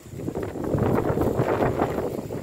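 Wind buffeting the microphone in gusts, a loud uneven low rumble that builds about half a second in.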